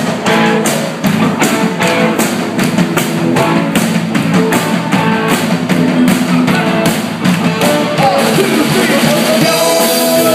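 Live rock-and-roll band playing an upbeat passage of a 1966 song, with a steady drum beat.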